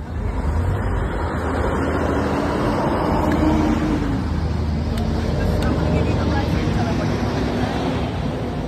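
Steady motor vehicle noise from the street, with a low engine hum, along with background voices.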